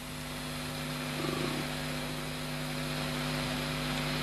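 A steady low hum with an even background hiss, and no voice.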